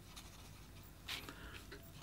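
Pelikan 800-series fountain pen nib writing on paper: faint, light scratching strokes, one a little louder about a second in. The nib glides smoothly.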